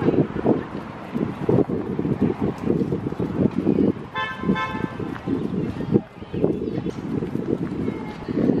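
A car horn sounds once, briefly, about four seconds in, over a steady low street rumble.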